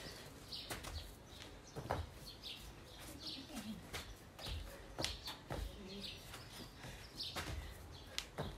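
Small garden birds chirping on and off, with scattered dull thuds and scuffs from people doing burpees on a grass lawn.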